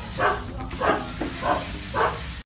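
A dog barking four times in an even rhythm, about one bark every half second or so.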